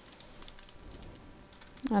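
Computer keyboard being typed on: a quick, irregular run of faint key clicks.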